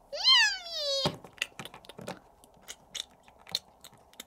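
A person voicing a high cat's meow for a toy cat, one call of about a second that rises and then falls. It is followed by a string of light clicks and taps of plastic toy figures on a toy food dish and wooden floor.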